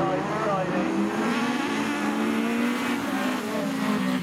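Several single-seater autograss race cars racing on a dirt track, their engines revving hard, with several engine notes gliding up and down in pitch together.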